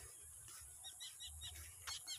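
Faint bird chirps: a short run of about four quick chirps about a second in, over light wind rumble on the microphone.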